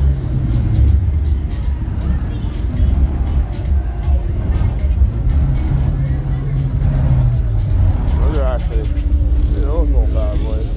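Loud bass-heavy music played through car audio systems, its deep bass steady and dominant. A wavering voice rises over it near the end.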